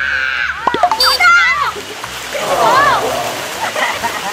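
Pool water splashing as two people throw water at each other by hand, with high shrieks and laughter rising and falling over the splashes.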